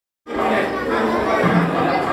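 Crowd chatter: many people talking at once, starting just after the beginning.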